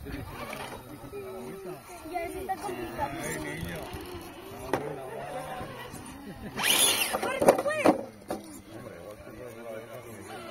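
Onlookers talking in the background, not clearly enough to make out words. About seven seconds in, a louder, high-pitched voice cuts through for a second or so.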